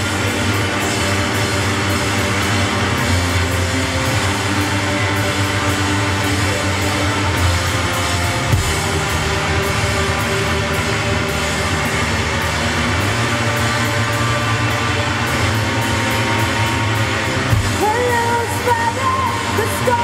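A rock band playing live: electric guitar and drum kit in a dense, steady wash of sound, with a voice coming in over it near the end.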